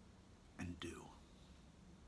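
Near silence with a faint steady room hum, broken about half a second in by one short, soft, breathy sound from a man's mouth.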